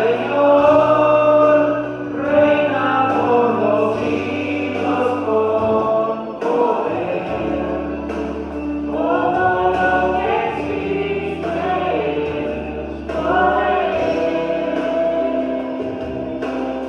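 A man singing a gospel song into a microphone, amplified, in phrases of long held notes over accompaniment with sustained bass notes.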